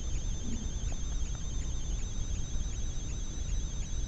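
Room tone: a steady hiss and low hum with a faint, thin high-pitched whine, and no distinct event.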